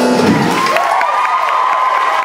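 The live band's final held chord stops about a third of a second in, and the audience cheers and applauds.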